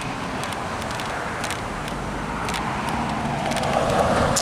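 Road traffic at a street crossing: a vehicle driving past on the cross street, its tyre and engine noise growing louder near the end over a steady background rush.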